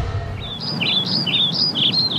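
A small songbird chirping a quick run of short, repeated up-and-down notes, about four a second, over a steady low background hum.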